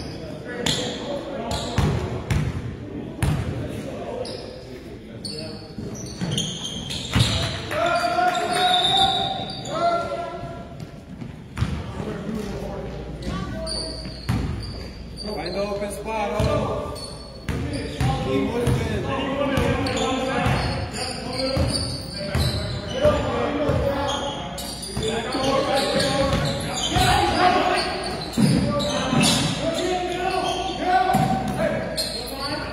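Basketball being dribbled on an indoor court, many short bounces and thuds, mixed with voices of players and spectators, all echoing in the gym.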